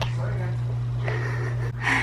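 A small child's short breathy gasps close to the microphone, the clearest one near the end, over a steady low hum.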